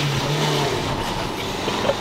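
Cabin noise of a Citroën C15 van on the move: engine and road noise with light rattles. A steady low hum stops about two-thirds of a second in.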